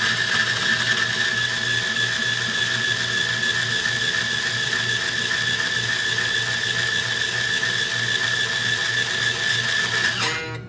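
Power string winder running steadily, turning a guitar tuner post to wind on a new string; a steady whine that cuts off at the very end.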